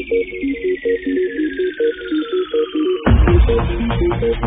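Early-1990s rave music from a DJ set: a repeating synth arpeggio under a long falling synth sweep, with the bass and kick held back, then the full beat and bass come back in about three seconds in.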